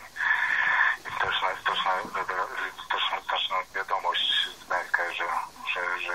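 Speech only: a man's voice talking over a telephone line, thin and cut off in the highs.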